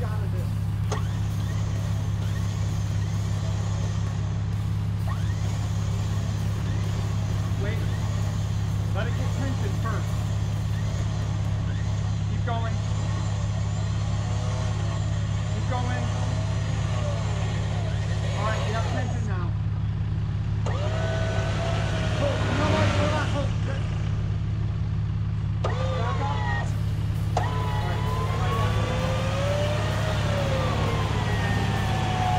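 Chevrolet Colorado ZR2 Bison truck running steadily while stuck in deep mud during a winch recovery. Rising and falling whines come in over the steady low hum in the second half.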